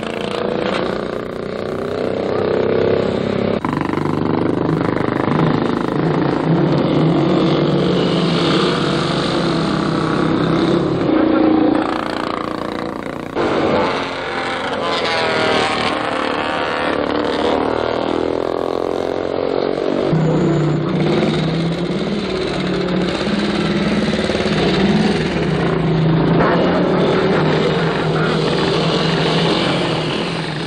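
Vintage motorcycle engines running as the bikes ride round a track, their pitch rising and falling as they accelerate and pass. The sound jumps abruptly several times.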